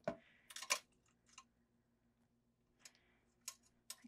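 A few faint, sharp clicks and taps of paper pieces and tweezers being handled on a cutting mat, scattered over a quiet room: a small cluster about a second in, then single ticks near the end.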